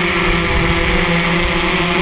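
Xdynamics Evolve quadcopter hovering low over its landing pad while it is brought in to land: a steady hum from its motors and propellers, several even tones over a hiss.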